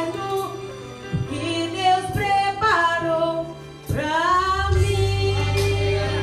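Women's choir singing a Portuguese gospel hymn in unison, with a loud upward slide in the voices about four seconds in, over sustained low accompaniment notes.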